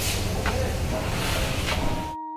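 Steady outdoor background noise, a low rumble with a hiss over it, typical of wind on a handheld camera's microphone.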